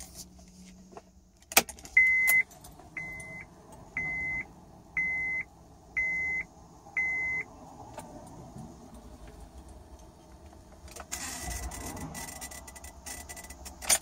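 Ignition key of a 2008 Honda Accord clicks into position, and a dashboard chime beeps six times, about once a second. Later, for about two and a half seconds, a buzzing comes in as the key is turned slowly toward start with no engine cranking. The owner suspects a fault in the ignition switch, relay, fuse, starter or battery connections, then a click near the end.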